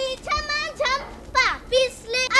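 A child's voice calling out in a series of short, high-pitched phrases.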